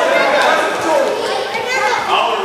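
Children's voices calling out and chattering over one another in an indoor gym during a youth soccer game, with no single clear speaker.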